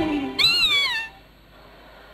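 A single meow, rising then falling in pitch, about half a second long, just after the start, followed by faint room tone.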